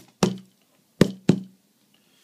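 Three sharp knocks, one near the start, then two about a second in, a third of a second apart, each with a brief low ring after it: hard objects being handled on a tabletop.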